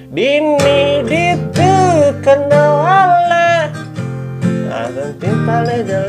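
A man sings a melody over a strummed acoustic guitar with a capo on its neck. The voice holds long, wavering notes through the middle.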